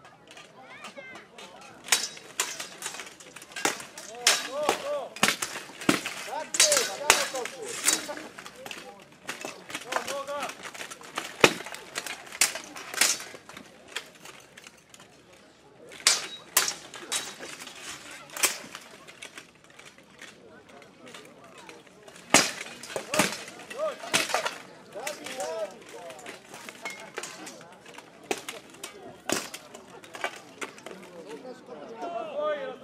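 Steel swords striking each other and plate armour in a full-armour duel: sharp metallic clangs in several rapid flurries with short pauses between.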